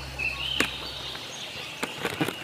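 Quiet outdoor background: a high warbling chirp in the first half second, two sharp clicks, and a low hum that stops about a second in.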